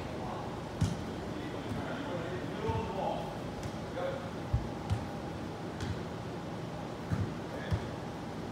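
Soccer ball kicked back and forth on artificial turf: half a dozen dull thuds at uneven intervals, the loudest about a second in, over faint background talk.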